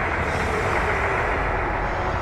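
Steady, dense rumble of battle noise, with no separate blasts standing out.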